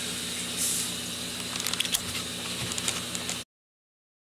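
Steady room tone: a low hum under a faint hiss, with a brief rustle less than a second in and a few faint clicks around two seconds in. The sound then cuts off abruptly to dead silence about three and a half seconds in, where the recording ends.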